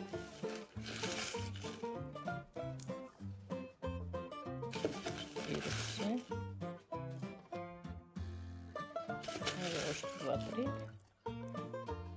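Background instrumental music with a steady, evenly repeating bass line and short pitched notes above it.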